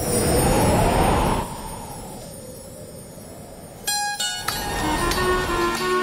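Street traffic noise, loudest in the first second and a half with a passing-vehicle whoosh, then quieter. About four seconds in, a music cue of plucked strings starts with a sharp pluck and runs on as a melody.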